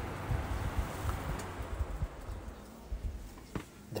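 Electric fan blowing air across the microphone, a steady rush with low buffeting, that dies away through the second and third seconds as the fan, switched off through a smart plug, spins down.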